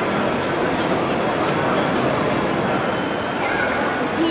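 Steady hubbub of a crowd of people talking at once, with no single voice standing out.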